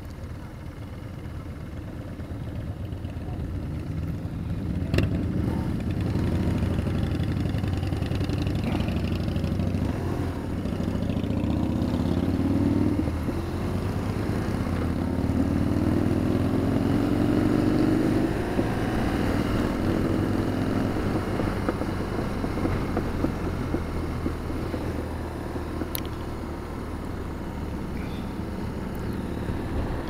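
BMW R1200RT boxer-twin motorcycle engine pulling away from a stop, getting louder over the first few seconds. Its pitch then climbs in two or three long sweeps between gear changes as it accelerates, before settling to a steadier cruise.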